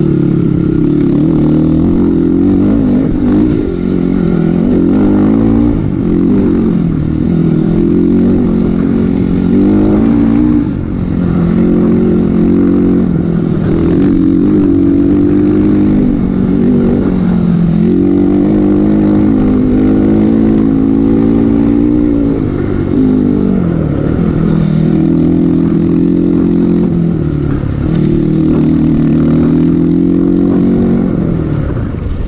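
Kawasaki KLX trail bike's single-cylinder four-stroke engine under way, the throttle opening and closing so the engine note rises and falls over and over. The note dips briefly about ten seconds in and again a little past twenty seconds.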